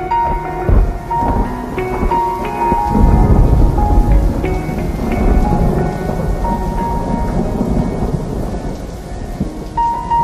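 Thunder rumbling over steady heavy rain, a storm effect laid under soft, slow music with long held notes. The rumble swells strongest about three to five seconds in, then settles back under the rain.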